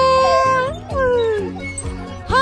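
A toddler's high-pitched squeal of delight, held for most of a second and then sliding down in pitch, over background music.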